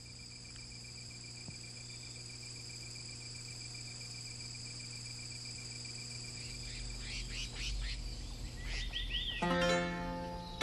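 A steady night chorus of crickets trilling in high, even tones over a low hum. From about seven seconds in, short falling bird chirps join, and near the end plucked-string music comes in.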